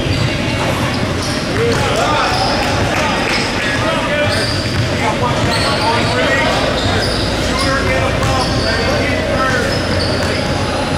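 Basketball bouncing a few times on a hardwood gym floor during free throws, with people talking in the echoing gym.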